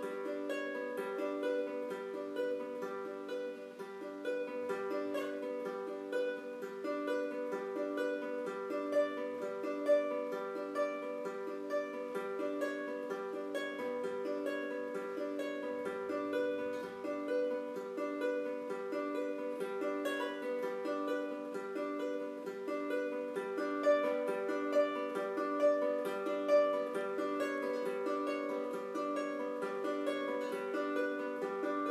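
Solo baritone ukulele, fingerpicked, playing a flowing tune as a steady run of plucked notes, several a second, with no pause.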